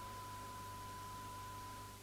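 Faint hiss and low hum of an analogue broadcast recording, with a thin, steady high-pitched tone that cuts off at the end.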